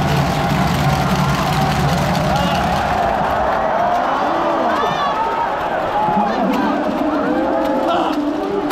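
Baseball stadium crowd, many voices talking and calling out at once. A low steady drone underneath stops about halfway through.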